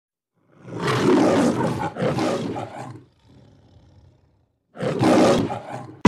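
A deep, rough roar sounding three times, the first two back to back and the third near the end, with a faint low rumble in the gap before it.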